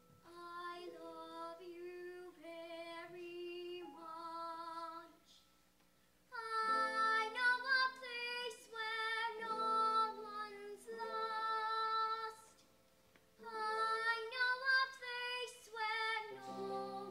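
A young girl singing a solo, in three phrases with short pauses between them.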